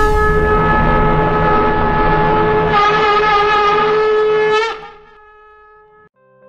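Conch shell (shankha) blown in one long held note, growing fuller about three seconds in, then bending upward briefly and stopping near the five-second mark.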